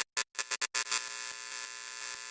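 Electronic outro sound effect: a quick run of short glitchy stutters, then, just under a second in, a steady buzzing drone made of many held tones.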